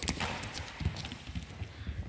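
A quick, uneven run of footfalls with light clicks on a hard sports-hall floor.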